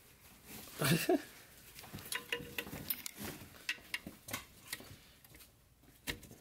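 Scattered small clicks and scrapes of gloved hands squeezing and working the clip of a car horn's wiring connector to free it, with a short vocal sound about a second in.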